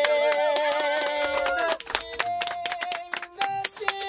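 Talk-box notes played from a synthesizer patch: a held, wavering tone that moves to shorter stepped notes about halfway through. A round of hand clapping runs under it.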